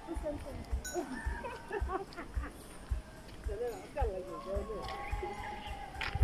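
Footsteps of a person walking on a dirt track, low thumps about twice a second, with faint voices in the background.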